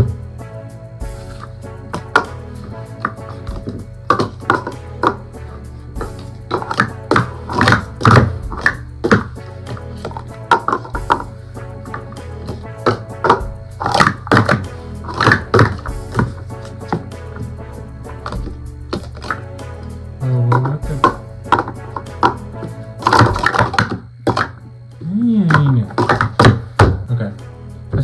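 Plastic speed-stacking cups clacking in quick bursts as they are stacked up and down on a stacking mat, over background music.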